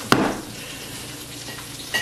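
Bread dough thrown down hard onto a floured board, one sharp slap just after the start, to knock the air bubbles out of the shaped loaf. A low steady hiss follows.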